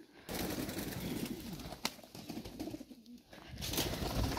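Domestic fancy pigeons cooing: low, repeated coos that bend up and down in pitch. A single sharp click comes about two seconds in.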